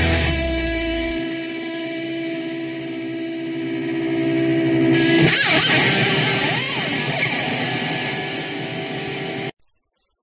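Distorted electric guitar ringing out at the close of a punk rock track, with the low end dropping away about a second in and a surge of noisy guitar about five seconds in. The track cuts off abruptly near the end.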